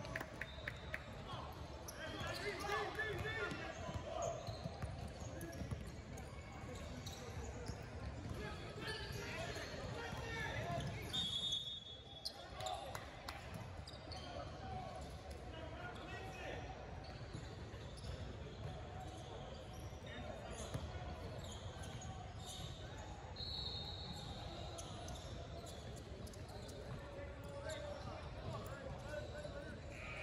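Basketball gym ambience: balls bouncing on the hardwood floor and voices echoing around a large hall. Two steady high whistle blasts, a short one about a third of the way in and a longer one about three quarters through, fit a referee's whistle stopping play.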